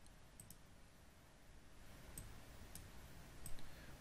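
Several faint computer mouse clicks over quiet room tone.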